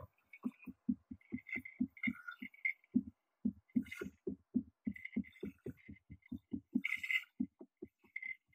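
Experimental electronic music from physical-modeling and modular synthesis: a rapid, uneven train of short low thuds, about four a second, with scattered higher clicks and chirps over it.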